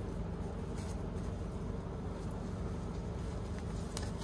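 Steady low mechanical hum, with faint rustling as hands handle a cloth pouch.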